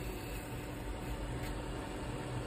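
Wood lathe running steadily, a low motor hum under a steady hiss, while a skew chisel takes light slicing cuts on the spinning spindle.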